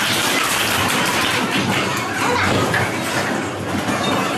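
Bowling alley din: bowling balls rolling down the lanes and the alley's pin machinery, a steady, dense rumble that eases slightly near the end.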